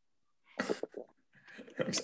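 A person coughs briefly, a short burst of coughing about half a second in, heard over a video-call connection.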